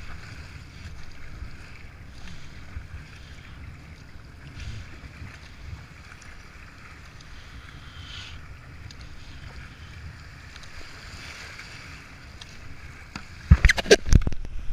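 Rushing whitewater and paddle strokes splashing around a whitewater kayak running flooded river rapids, with a low rumble of wind on the microphone. A cluster of loud, sharp knocks near the end.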